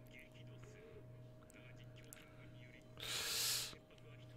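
Faint anime dialogue leaking from headphones over a low steady hum. About three seconds in, a short loud breathy burst into the microphone: a stifled laugh blown out through the nose.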